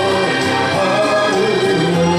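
A man singing a Japanese popular song into a handheld microphone over instrumental accompaniment.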